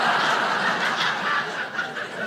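An audience laughing together after a punchline, the laughter slowly dying down toward the end.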